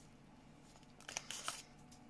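Faint handling sounds of a handheld embossing pliers and sticker paper: a short run of small clicks and paper rustle about a second in, as the pliers is released from the embossed sticker and slid off the roll.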